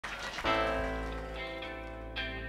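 Live band music starting: a full chord struck about half a second in and left ringing, slowly fading.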